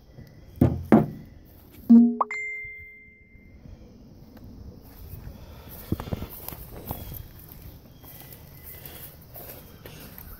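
Two light knocks, then about two seconds in a single loud, bright ding that rings on for about a second and a half before fading. Faint handling and footstep noise follows.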